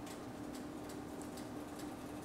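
Quiet kitchen sounds while cornbread batter is poured from a stainless steel mixing bowl into a metal muffin tin: soft scattered ticks over a faint steady hum.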